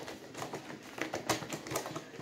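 Fast typing on a keyboard: a quick, uneven run of light key taps, about six or seven a second.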